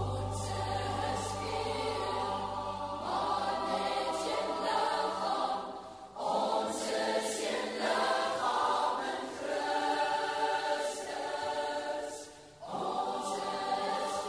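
A large worship choir singing in Afrikaans, in long held phrases with short breaks about six and twelve and a half seconds in.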